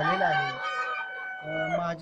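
Kadaknath rooster crowing: one long, high note held for over a second, starting about half a second in and stopping near the end.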